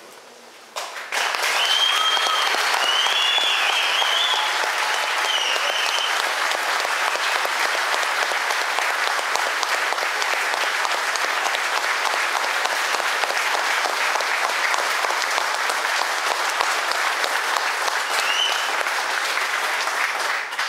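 A room full of people applauding, starting about a second in and going on steadily, with a few whistles in the first few seconds and another near the end.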